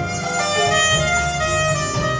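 Small jazz ensemble playing, a clarinet carrying a moving melody over piano and drums.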